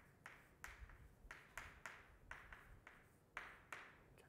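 Chalk writing on a blackboard: a faint, irregular run of about a dozen short scratching strokes and taps.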